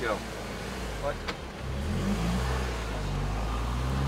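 Car engine pulling away from a standstill, growing louder about a second and a half in as the car accelerates off.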